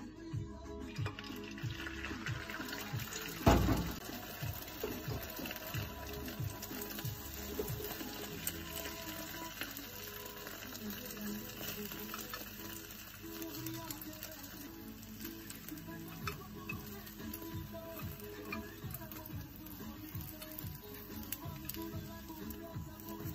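Egg frying in an oiled rectangular tamagoyaki pan on a gas hob, under background music with a regular beat. A single loud thump comes about three and a half seconds in.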